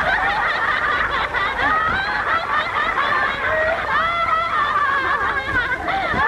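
Several women laughing and squealing together, their high voices overlapping.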